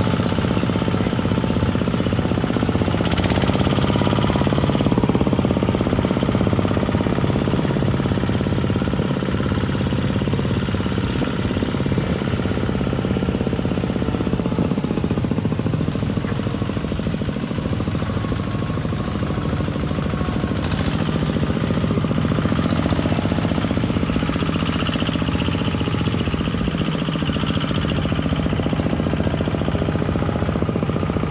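Single-cylinder diesel engine of a Cambodian two-wheel walking tractor (koyun) running steadily under load as it pulls a trailer along a rutted dirt track, with a fast knocking beat and an occasional clatter from the rig.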